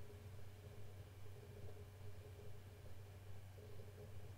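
Faint steady low hum with no distinct events: quiet room tone.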